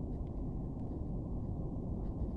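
Steady low rumbling noise, muffled, with nothing in the upper range.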